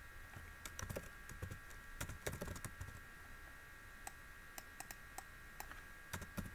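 Faint computer keyboard typing: irregular, scattered keystroke clicks, a few a second.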